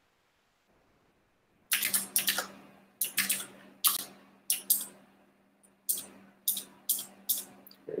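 Keys struck on a computer keyboard: after almost two seconds of silence, about a dozen sharp clacks at an uneven pace, some in quick pairs.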